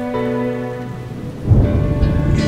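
A sustained chord from the song's instrumental backing, thinning out, then about one and a half seconds in a loud rumble of thunder breaks in over the sound of rain.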